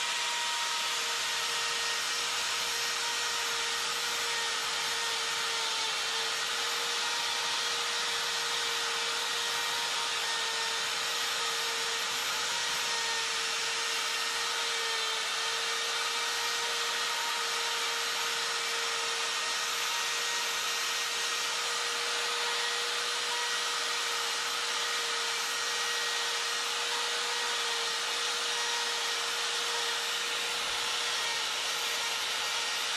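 Die grinder running at a steady high-speed whine with a half-inch Saburrtooth tapered flame bit, burring into the wood of a bear carving to rough out an eye. The motor's whine holds one pitch throughout, over the hiss of the bit cutting wood.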